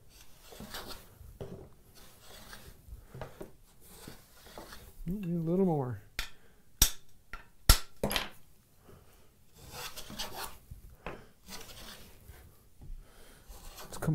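Wooden skew-iron rabbet plane taking strokes along the edge of a board, a soft scraping shave of the iron cutting a rabbet. About seven and eight seconds in come two sharp knocks.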